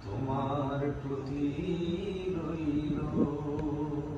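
Man singing a Bengali love song without words being picked out, drawing out long held notes that glide slowly in pitch.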